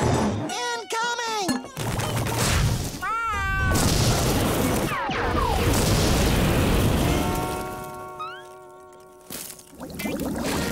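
Cartoon sound effects: a warbling, wordless cartoon voice, then a long loud rushing burst as a flood of popcorn erupts and fills the room. Near the end a held musical chord fades out.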